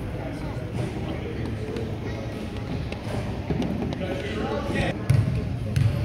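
Spectators chattering in a gym, with a basketball bouncing on the hardwood court a few times near the end as a player readies a free throw.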